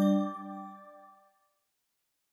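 The last note of a short chime-like intro jingle ringing out and fading away within about a second and a half, followed by silence.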